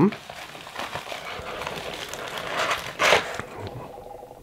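White packing material crinkling and rustling by hand as a coin in its plastic holder is unwrapped, with a louder crinkle about three seconds in.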